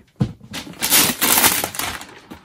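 Wrapping paper being torn and crinkled as it is ripped off a large gift box, a run of rough tearing bursts starting about half a second in.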